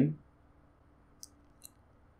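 Two faint computer mouse clicks about half a second apart, a little over a second in, over quiet room tone with a low hum.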